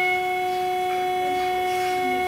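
Prepared guitar holding one sustained, unchanging droning note with bright overtones.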